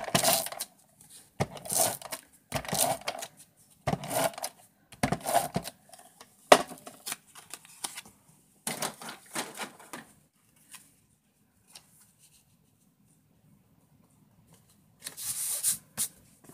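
Handheld adhesive tape runner drawn across cardstock in a series of short rasping strokes, about eight in ten seconds, with one sharp click. Near the end comes a longer rub of paper on paper as the panel is pressed down.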